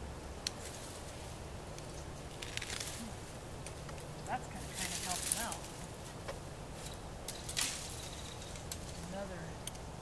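Long-handled loppers cutting into dry brush and berry vines: sharp snips and snaps with bursts of rustling branches, the loudest about halfway through and again near the three-quarter mark.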